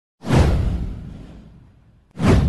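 A single whoosh sound effect for an animated intro. It comes in sharply about a quarter second in with a deep low rumble underneath, then falls in pitch and fades away over about a second and a half.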